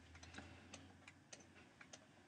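Near silence with faint, irregular ticks of a stylus tapping and sliding on a tablet screen as words are handwritten.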